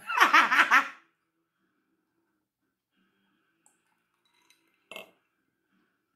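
A woman laughing, a quick run of pitched 'ha' pulses lasting about a second. A brief, much quieter sound follows about five seconds in.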